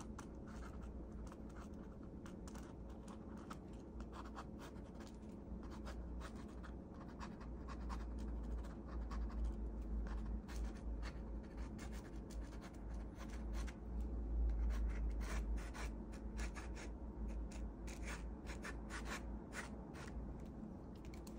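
Ink pen scratching across paper in many quick, short strokes as lines are drawn. A low rumble runs underneath, swelling about halfway through and again about three quarters of the way in.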